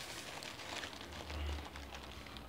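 Thin paper burger wrapper crinkling and rustling in the hands as a burger is unwrapped, faint and irregular, with a dull low bump about one and a half seconds in.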